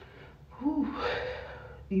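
A woman's short vocal sound followed by a long, breathy gasp lasting about a second, just before she speaks again.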